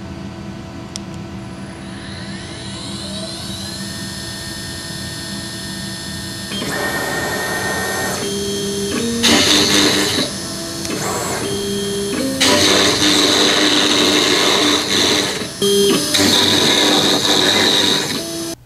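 CNC router whining as its spindle spins up, rising in pitch, then cutting into a wooden board. The drive motors whine at pitches that step up and down as the gantry moves, and the cutting noise comes in loud stretches in the second half.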